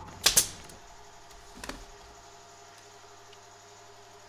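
Wooden drawer parts being handled and set in place on a workbench: one short sharp clack about a third of a second in, then a soft knock, with quiet room tone in between.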